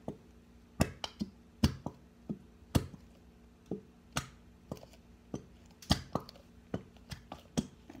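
Plastic Elmer's school glue bottle squeezed upside down over a bowl: a string of short, sharp clicks and pops at irregular spacing, about two a second, as glue and air spurt from the nozzle.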